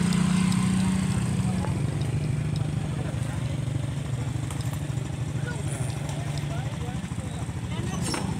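Small motorcycle engine running steadily close to the microphone, its pitch dropping slightly about two seconds in.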